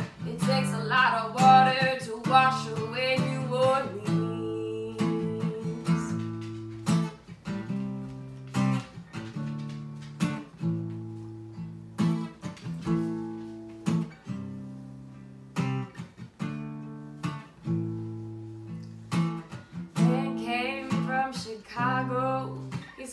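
Acoustic guitar strummed in a steady rhythm, playing an instrumental break between verses. A woman's singing voice is heard over it for the first few seconds and comes back near the end.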